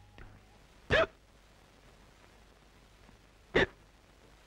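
A person hiccuping twice: two short, sharp hics about two and a half seconds apart.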